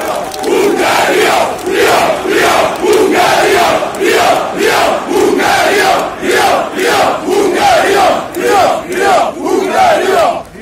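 Large crowd of supporters chanting loudly in unison: rhythmic shouted syllables at about two a second, alternating low and high in pitch.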